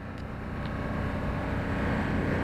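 Steady low hum of an idling engine, fading up and growing louder.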